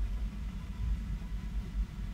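Steady low rumble of room background noise, with a faint high tone held throughout.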